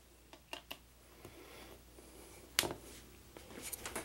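A few faint clicks and handling noises from a handheld camera being adjusted, the sharpest about two and a half seconds in and a small cluster near the end.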